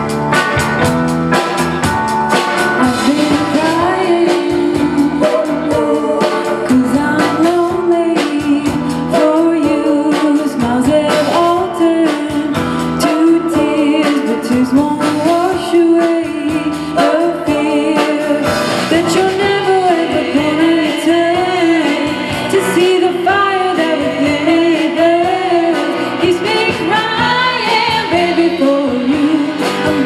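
Live band playing: electric guitar, electric bass and drum kit with a steady beat, and a woman singing the lead melody, which comes in about three seconds in.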